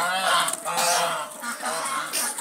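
A flock of domestic geese honking, several loud calls following one another and overlapping.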